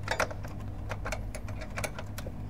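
Plastic wiring harness connectors and cables clicking and rattling as they are handled behind the front panel of a Hino 500 truck cab: about half a dozen sharp, irregular clicks over a steady low hum.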